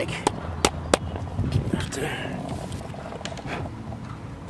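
Fingers wiping and rubbing dirt off the camera lens: about four sharp clicks in the first second, then scraping handling noise, with wind rumbling on the microphone.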